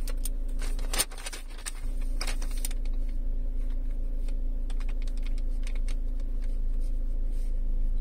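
Irregular taps and clicks of fingers pressing the keypad on a car navigation touchscreen while a code is entered, most frequent in the first few seconds and sparser after. A steady low hum runs underneath.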